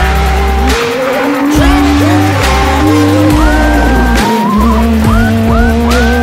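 Peugeot 106 rally car's engine revving hard through the gears, its pitch climbing quickly and levelling off again several times, under loud background music with a steady bass beat.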